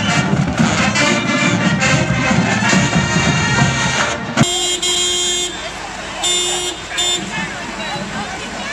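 Marching band playing as it passes, with brass prominent. About four seconds in the band cuts off suddenly and a vehicle horn sounds: one long blast, then two short toots.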